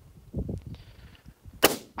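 A single rifle shot about one and a half seconds in, sharp and brief.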